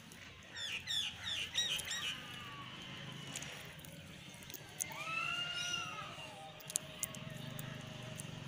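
Birds calling outdoors: a quick run of about five sharp chirps half a second in, then a longer arching call around five seconds in, over a faint low hum, with a few faint clicks near the end.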